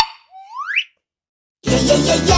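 Logo sound effect: a sharp pop, then a short rising whistle-like slide. After a moment of silence, an upbeat children's pop song with drums starts about a second and a half in.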